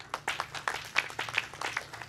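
Audience applause of fairly sparse, distinct claps, irregular and not in rhythm, stopping at the end.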